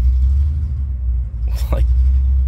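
Supercharged LSA V8 of a Chevy SS running steadily, a low rumble heard inside the cabin.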